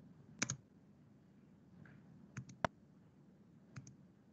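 Faint clicking at a computer as presentation slides are advanced: a double click about half a second in, a quick run of three clicks around two and a half seconds, and another double click near the end.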